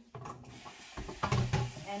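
Several quick clattering knocks and rattles, bunched about a second in, as kitchen scraps are thrown out.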